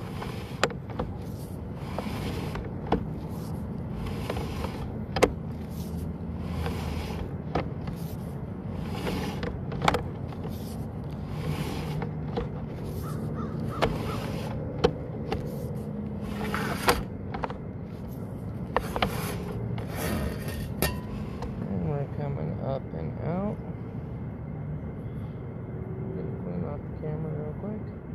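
Sewer inspection camera and its push cable being pulled up through a vent stack: irregular sharp knocks and scrapes over a steady low hum, stopping about three-quarters of the way through as the camera nears the top.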